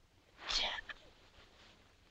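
A person's short breathy whisper about half a second in, then low room tone.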